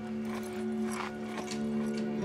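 Film score of sustained held notes, with a few soft knocks scattered through it.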